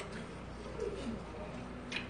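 Noodle-soup eating sounds: a few short, low hums and mouth noises while chewing, then a short sharp click just before the end.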